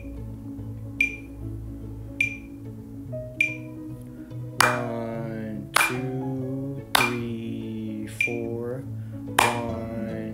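Metronome clicking slowly, a little over a second apart. After four count-in clicks, hand claps land on the beats with a voice counting the rhythm aloud, and one beat is left unclapped where a held note falls.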